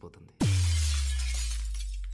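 Glass-shattering sound effect for a mirror breaking: a sharp crash about half a second in over a deep boom that drops in pitch, then fades slowly.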